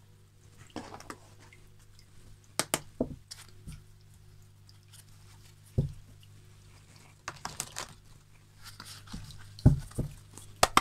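A deck of cards being handled on a tabletop: a few separate knocks and taps as it is picked up and moved, and a quick flurry of small card clicks a little past the middle, over a steady low hum.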